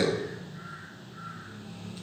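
Two faint short calls from a bird, such as a crow's caw, a little over half a second apart, over quiet room noise.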